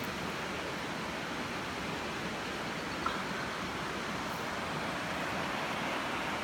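Steady rush of a high, fast-flowing river.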